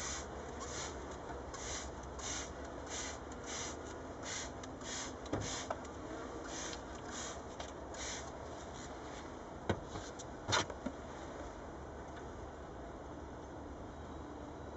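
Hand spray bottle pumped over and over, a short hiss of spray about twice a second for the first eight seconds, as lactic acid is sprayed onto the bees on a comb frame as a varroa treatment. A few sharp clicks follow about ten seconds in.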